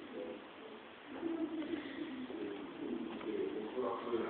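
A bird cooing in low, repeated phrases, starting about a second in.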